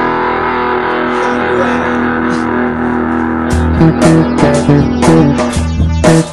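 Rock music at full volume: electric guitar chords held ringing for about three and a half seconds, then drums and bass come in with a driving beat.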